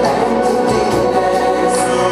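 Live band music with singing: held chords and voices over bass guitar and drums, with cymbals ringing high up.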